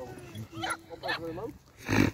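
A dog barking in a few short bursts, the loudest and sharpest just before the end.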